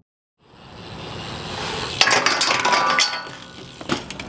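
After a moment of silence, outdoor background noise fades in, then a burst of sharp metallic clinks and clicks starts about two seconds in and tapers off.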